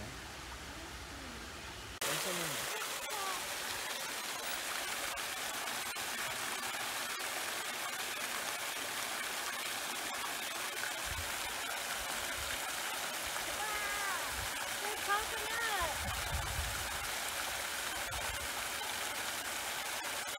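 Fountain spray splashing steadily into a concrete fish pool, a continuous hiss that starts abruptly about two seconds in. Faint voices can be heard in the background.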